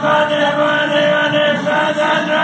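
A man singing a song, holding long, steady notes.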